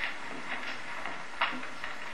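Steady hiss and room tone of an old studio sound recording on a film set, between the slate and the call for action, with one brief soft noise about one and a half seconds in.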